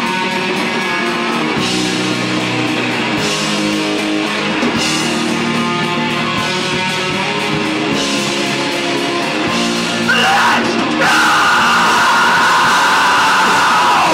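Live heavy rock band playing: distorted electric guitar and drum kit. About ten seconds in the music gets louder as a yelled vocal comes in.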